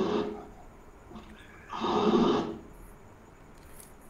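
A man's brief, breathy voice sound about two seconds in, following the trailing end of a spoken word, over faint room noise.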